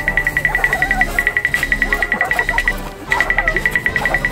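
Added background music with a fast, high-pitched beeping pulse, about eight beeps a second, that stops for a moment about three seconds in and then resumes.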